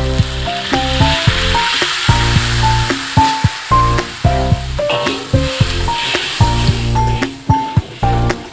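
Hot wok sizzling as a little water is poured onto fried onion paste, the sizzle dying down near the end, with background music throughout.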